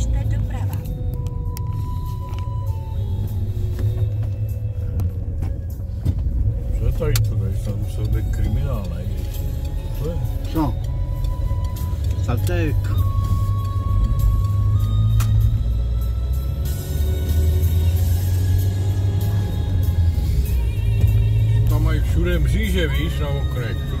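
Steady low rumble of a car's engine and tyres heard from inside the cabin while driving, with music and voices playing over it.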